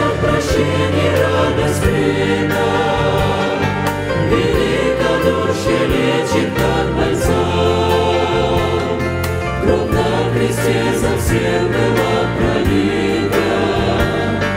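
A mixed choir of men's and women's voices singing a Russian-language hymn into microphones, over a steady low bass accompaniment.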